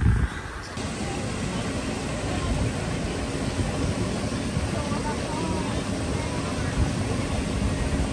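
Waterfall pouring over a rock ledge into a pool: a steady rushing of falling water that starts suddenly about a second in.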